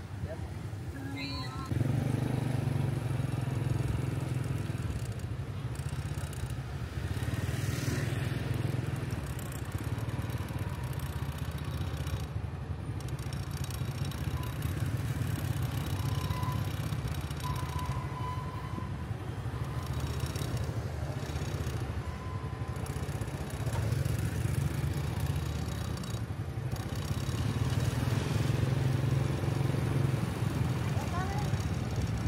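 Street traffic of small motorbikes running and passing, heard as a steady low engine drone, with people's voices in the background.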